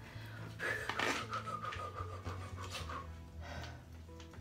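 A woman breathing heavily, panting and sighing as she feels overheated in a hot bath, over quiet background music.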